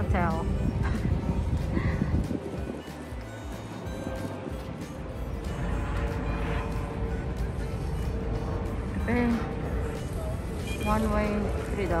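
Short bursts of voices over a steady low rumble of outdoor noise, with music playing in the background.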